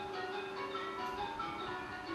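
Buddhist monks chanting a blessing together, a steady group chant held mostly on one pitch.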